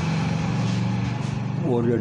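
A steady low mechanical hum with a hiss in a pause between a man's words. His speech resumes near the end.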